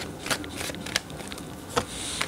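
A tarot deck being shuffled by hand: cards sliding against each other, with several short sharp snaps at uneven intervals.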